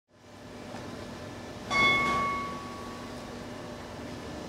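A single bell-like metal percussion note struck a little before halfway, ringing clearly and fading away over about a second, over a steady low hall hum.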